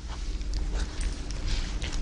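Steady low hum with faint background room noise and a few weak ticks.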